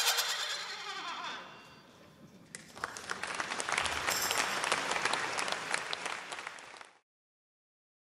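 A brass band's final chord rings out and dies away over the first two seconds, then the audience applauds from about two and a half seconds in until the sound cuts off suddenly near the end.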